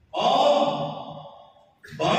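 A man's voice holding one long, drawn-out phrase that starts just after the beginning and fades away, followed by a short breath near the end before the voice resumes.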